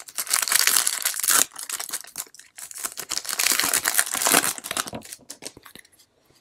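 Foil wrapper of a Topps baseball card pack being torn open and crinkled by hand. The crinkling comes in two long stretches, the first in the opening second and a half and the second from about two and a half to four and a half seconds in. Lighter rustles and clicks follow as the cards slide out.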